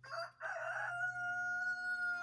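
A rooster crowing: a short opening note, then one long call that starts rough and settles into a steady held pitch for more than a second.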